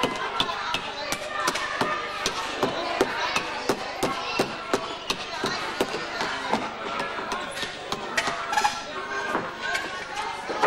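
Background chatter of voices with frequent sharp knocks and clicks, several a second.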